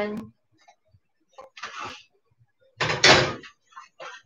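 A clunk and clatter as a steel cooking pot with a glass lid is set down on the gas hob's grate, about three seconds in, with a smaller knock just before.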